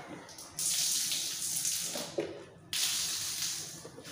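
Water running in two bursts, each about a second and a half long, starting sharply and cutting off suddenly.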